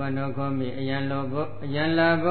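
A man's voice intoning a Buddhist chant, held on long, level pitches.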